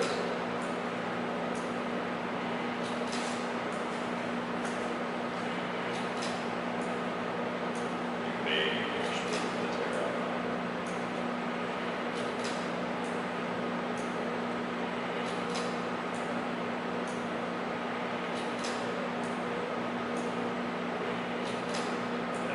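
Steady mechanical hum from the motor drive of a coil-winding rig turning a large Tesla coil secondary, with a couple of low steady tones and faint scattered ticks.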